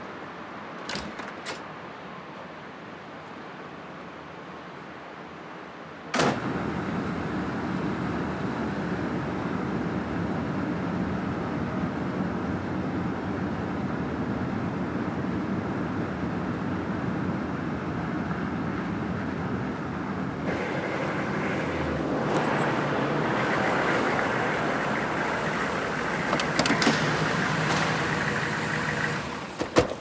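A car running, heard from inside the cabin: a steady engine-and-road hum that starts abruptly about six seconds in and grows a little louder in the last third. Before it come a few quiet seconds with two faint clicks.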